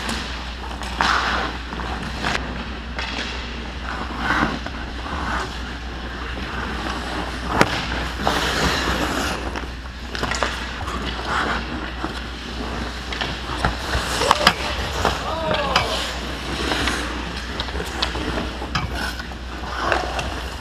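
Ice hockey play close to the goal: skate blades scraping and cutting the ice, with sharp clacks of sticks and puck scattered throughout, the loudest about a third of the way in and again past the middle. Players' shouts come in now and then.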